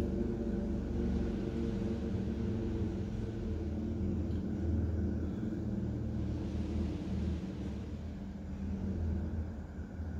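Steady low hum and rumble of room background noise, with several low tones held level throughout.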